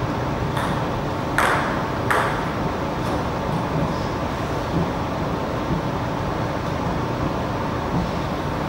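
A table tennis ball bouncing a few times with sharp clicks, the loudest about a second and a half in and another about two seconds in, with weaker ticks after, over a steady background hum.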